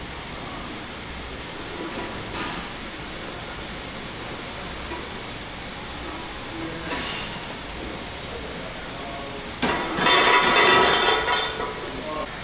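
Loaded barbell (about 200 lb) set back onto the squat rack's hooks after a set of back squats, with a loud metallic clanking and rattle of plates near the end. Before that there is steady gym room noise with a few faint short breaths or scuffs.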